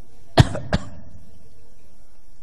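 A person coughing twice in quick succession, the first cough louder.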